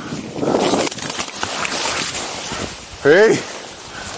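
Snowboard riding through deep powder snow, a hiss of snow that swells and fades in the first second and carries on more faintly, with small crunches. About three seconds in, a short voice calls out, its pitch rising and falling like a whoop.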